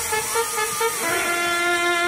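Brass-led music with no bass beat: a few short brass notes, then one long, low held note from about a second in.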